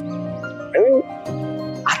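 TV drama background score of soft sustained held notes. About a second in comes a short wordless voice sound with a curving pitch, and speech begins near the end.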